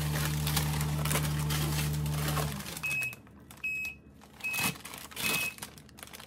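Plastic grocery bags and chip bags crinkling and rustling as they are unpacked. A steady appliance hum stops about two and a half seconds in and is followed by four short, high electronic beeps.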